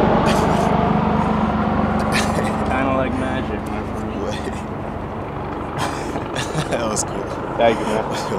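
Low rumble of a passing vehicle that fades away over the first few seconds, with a few short sharp voice or handling sounds over it.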